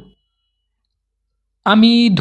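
A man's voice speaking Bengali, trailing off just after the start and resuming near the end, with dead silence for about a second and a half between.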